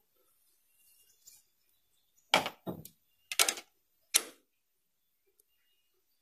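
A handful of short, sharp metallic clicks and knocks in quick succession, starting about two seconds in: hand tools working against the metal head parts of a multi-head embroidery machine while a bolt is being locked down.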